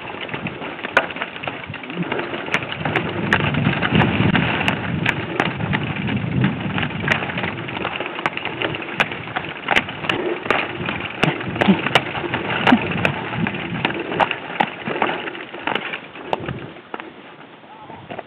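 Mountain bike riding down a rough dirt singletrack: a steady rushing noise from the ride, with frequent sharp clicks and knocks as the bike rattles over bumps.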